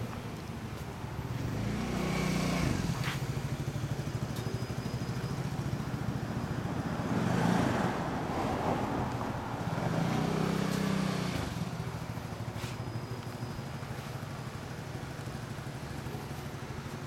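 Custom Honda Hornet 250's four-cylinder engine running at idle through an aftermarket exhaust, with swells of revving about two seconds in and again around ten seconds.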